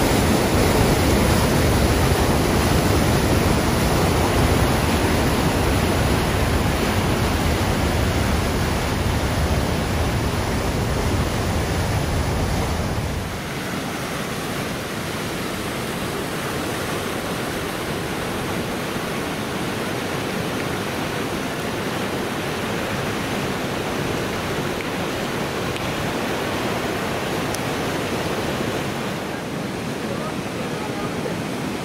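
A waterfall pours into a rock pool of a mountain river gorge with a loud, full rush of white water. About a third of the way in, this gives way suddenly to a lighter, steady rush of river water running over rock rapids.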